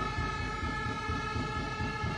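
A steady, sustained horn-like blare, several high tones held together, over the low rumble of a basketball arena crowd and play on court.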